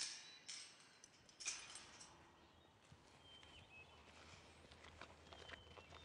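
Near silence: faint outdoor rural ambience, with a few soft rustling footsteps on dry grass in the first two seconds and a few faint high bird chirps later.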